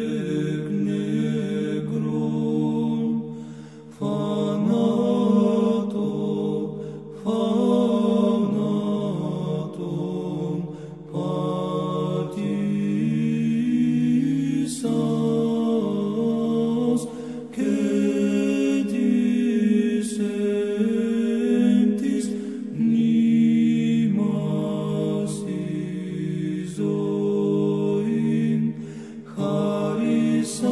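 Orthodox church chant sung in Greek: voices singing slow, drawn-out phrases over a low held note, with short breaks between phrases every few seconds.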